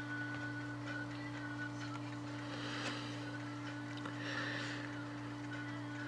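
Quiet steady low hum with faint hiss: background room tone, with a faint rise in the hiss about halfway through and again near the end.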